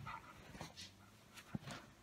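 Great Pyrenees pawing at its owner: a few faint, scattered soft thumps and short clicks.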